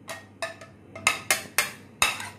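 Steel spoon knocking against a plastic plate and glass bowl while scraping grated raw banana off the plate: a string of sharp, short clinks, about five in two seconds, louder in the second half.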